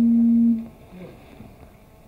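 A steady, low hum on a single pitch through the hall's microphone system cuts off abruptly within the first second, leaving only faint room sound.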